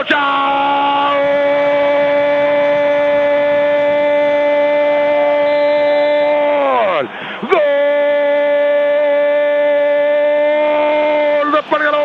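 A Spanish-language football radio commentator's drawn-out goal call, the long shout of "gol" that signals a goal has been scored. It comes in two shouts: the first is held on one note for about seven seconds and drops in pitch as it ends. After a quick breath, a second shout is held for about four seconds.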